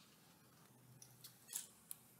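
Near silence with a few faint clicks in the second half, the loudest about one and a half seconds in.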